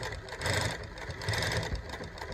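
Direct-drive industrial post-bed lockstitch sewing machine (New-Tech GC-8810) stitching in short spurts: fast needle-and-hook ticking over the motor's hum as the fabric is steered freehand under the roller foot.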